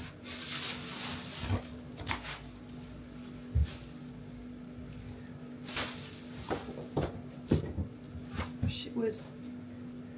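Packaging rustling and scattered knocks of cardboard and wood as a wooden dog-stopper stair gate is lifted out of its box, with one heavier thump a few seconds in.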